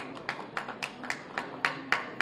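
Handclaps, a few people clapping about three or four times a second, sharp and separate rather than a dense roar of applause.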